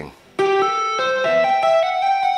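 Electric guitar played with the left hand only, no picking: a legato run of hammer-ons from nowhere and pull-offs, each note sustaining and the pitch stepping every fraction of a second. The phrase begins about half a second in after a brief pause.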